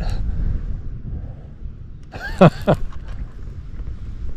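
Wind buffeting the microphone, a steady low rumble. About two and a half seconds in there is a brief sound that falls in pitch.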